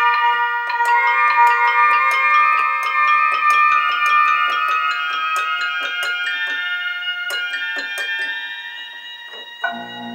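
Roland D-20 synthesizer playing a run of notes on its upper keyboard part, several a second, each with a sharp attack and a long ring, overlapping as they sustain. Near the end, lower sustained notes come in.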